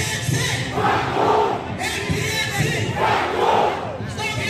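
A crowd of protesters shouting slogans together, in several loud shouted bursts over steady crowd noise.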